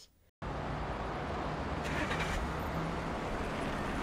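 Steady road traffic noise, cars passing on a street, starting suddenly after a short silence, with a brief rise in hiss about two seconds in.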